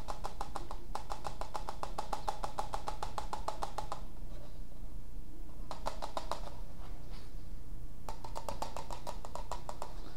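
Rapid, evenly spaced clicking and creaking from thin plastic cups rubbing together as liquid resin is poured from one cup into the other. It comes in stretches, breaking off about four seconds in, returning briefly near six seconds and again from about eight seconds.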